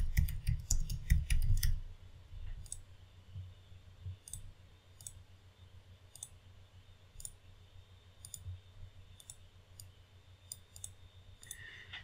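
Computer keyboard and mouse clicks. There is a quick run of key presses for about two seconds, then scattered single clicks.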